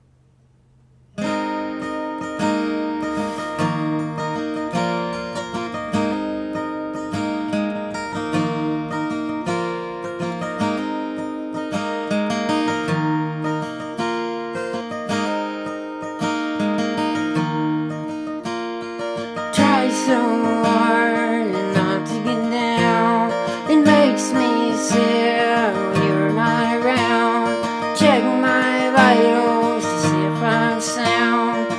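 Acoustic guitar starting about a second in, playing a repeating pattern over a low bass note; the playing grows fuller and louder about twenty seconds in.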